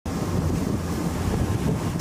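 Wind buffeting the microphone over open sea, with the steady wash of water and a low rumble underneath.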